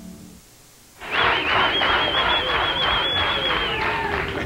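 Studio audience cheering and clapping, with one long, shrill, slightly wavering whistle held for nearly three seconds. It starts suddenly about a second in, after a brief hush.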